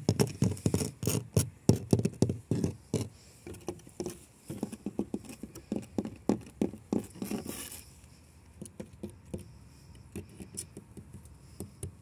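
Fingers tapping on the painted wooden planks of a garden shed. The taps come fast and close together for the first few seconds, then thin out and grow fainter.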